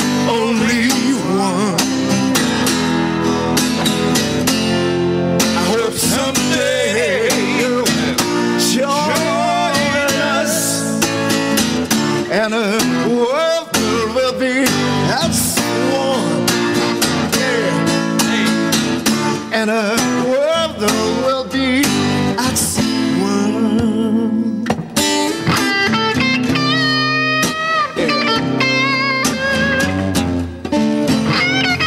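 Two men singing together to an acoustic guitar and an electric guitar, played live.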